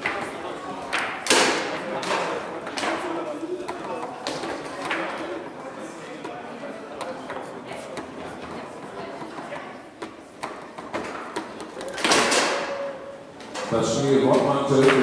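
Foosball table play: the ball and the players' figures knocking sharply against each other, the rods and the table walls in irregular bursts, with a dense run of heavy knocks about twelve seconds in. The knocks echo in a large hall.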